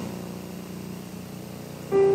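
A steady low hum with a single short click at the start. A keyboard note comes in right at the end.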